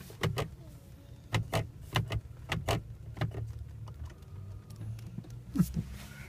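Steady low hum of the Tesla Model S's cooling fans still running after the air conditioning has been switched off, with irregular short clicks and light knocks over it.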